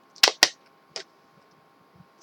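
Three sharp plastic clicks, two close together near the start and a third about a second in, as a snap-on case is pressed onto a Samsung Galaxy S3 phone. The case does not sit right.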